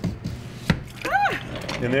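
Wall-mounted lever-action French fry cutter pressed down, forcing a whole raw potato through its blade grid, with one sharp clack about two-thirds of a second in.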